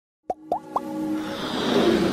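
Logo-intro sound effects: three quick bloops, each rising in pitch, about a quarter second apart, followed by an electronic music swell that builds steadily louder.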